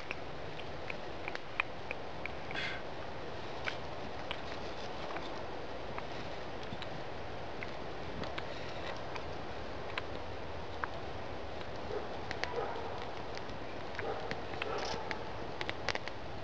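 Light, scattered clicks and taps of dry wooden sticks knocking together as they are lashed to a table frame with cord, over a steady outdoor background hiss.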